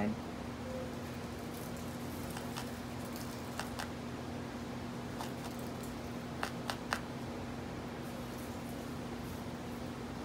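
Faint clicks and taps of a barbed felting needle jabbing into wool on a foam block, a handful of them spread out, with three close together a little past the middle, over a steady low hum.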